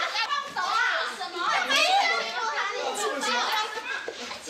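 Several excited, high-pitched voices talking and shouting over one another in a commotion, with no clear words.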